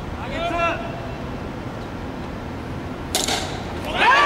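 A brief shout from a player about half a second in, then about three seconds in a single sharp crack of a bat hitting the pitched ball, with voices breaking out just after.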